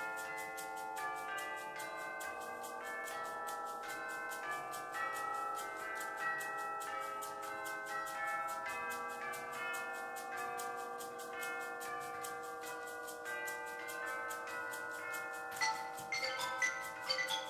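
Concert wind band playing a slow passage of held chords that change about once a second, with a soft, even ticking running over the music at roughly four ticks a second.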